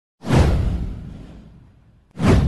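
A whoosh sound effect with a deep low boom. It hits suddenly a moment in, sweeps down in pitch and fades away over about a second and a half.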